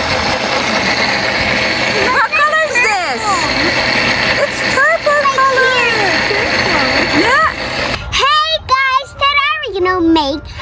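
Countertop blender running steadily as it blends berries into a purple mixture, then cutting off suddenly about eight seconds in.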